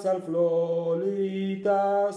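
A man singing a Maltese hymn to Saint George, holding long, slow notes, with short breaks between them.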